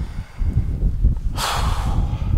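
A man's short, sharp breath close to the microphone about one and a half seconds in, over a steady low wind rumble on the microphone.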